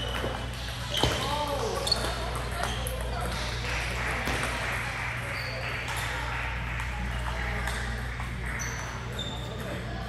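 Table tennis balls clicking off paddles and bouncing on tables at irregular intervals, each hit a sharp click with a short high ping, over a background of voices.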